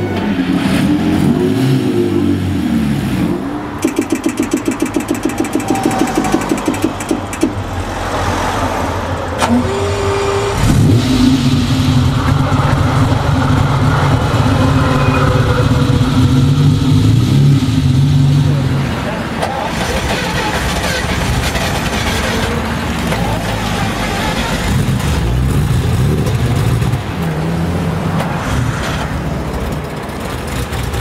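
Ferrari 250 GT Lusso V12: revving briefly at first, then turning over on the starter with an even rhythm of strokes for a few seconds. It catches about ten seconds in with a rev and runs at a raised, fast idle before dropping to a steady lower idle in the second half.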